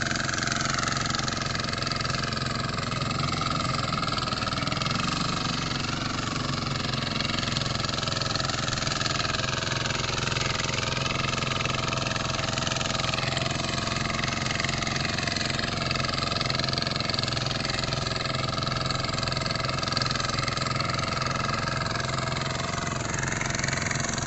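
The small engine of a walk-behind farm machine running steadily, its pitch wavering slightly up and down.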